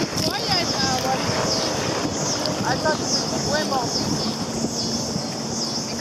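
Wind buffeting the microphone over choppy water splashing around a kayak as it is paddled, with snatches of voices.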